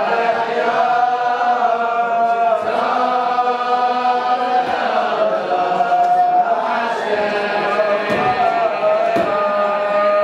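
A large group of teenage boys singing a melody together in unison, with long held notes that glide from one to the next.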